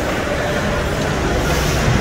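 Ice hockey skates scraping across the ice over a steady low rumble of the rink, with faint voices in the background.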